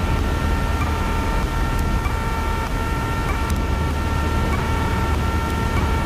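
Cessna 152's four-cylinder Lycoming engine at idle power while the plane glides on final approach, heard inside the cockpit as a steady low drone with air rushing past. A steady high-pitched whine of several tones sits over it, with a slight regular hitch about every second and a quarter.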